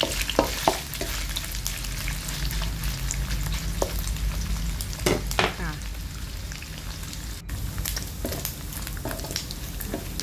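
Cubes of pork belly sizzling steadily in hot oil in a wok as they fry to crisp. A wooden spatula scrapes and knocks against the pan a few times, near the start and about five seconds in.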